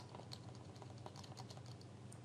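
A quick, irregular run of faint computer-key clicks, several a second, as moves are stepped back on a digital chessboard.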